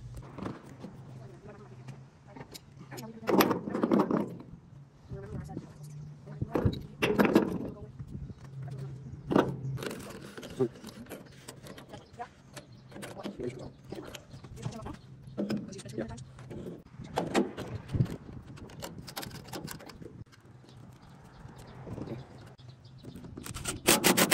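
Hands working metal pipe fittings and a plastic camlock hose coupling, with light clinks and scrapes, over muffled talk and a steady low hum.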